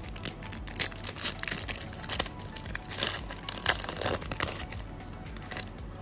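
Foil wrapper of a basketball trading card pack being torn open and crinkled, a run of small irregular crackles, over quiet background music.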